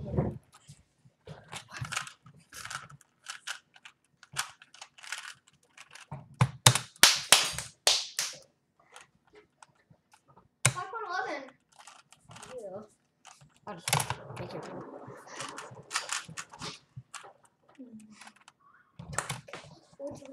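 Plastic layers of a 3x3 Rubik's cube being turned and handled in quick clusters of sharp clicks, with the cube set down on a computer keyboard and its keys tapped. The loudest run of clicks comes in the middle.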